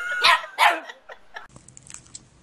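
Small white terrier puppy barking: two high-pitched barks in quick succession, then a few fainter short sounds before it stops.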